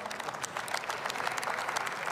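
Members of parliament applauding: many hands clapping in a dense, steady patter.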